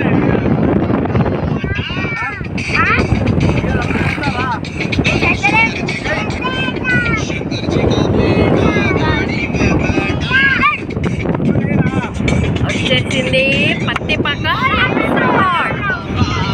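Steady wind and road noise of a car driving, heard from inside the car, with voices or singing coming and going over it.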